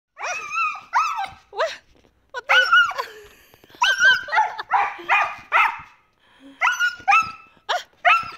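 Siberian husky barking and yowling in about a dozen short calls that rise and fall in pitch, with brief pauses between them: an angry, frustrated husky that cannot find its way out of the enclosure.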